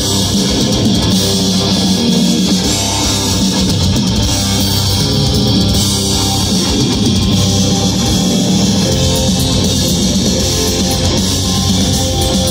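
Death-doom metal band playing live through a festival PA: distorted electric guitars, bass and drum kit, loud and steady throughout, heard from within the crowd.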